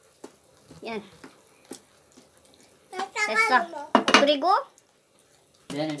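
A few short clinks of a stainless steel pot and its lid, between short bursts of speech.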